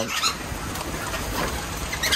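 Australian king parrots fluttering and giving a couple of short, faint calls at a feeding table, over a steady hiss.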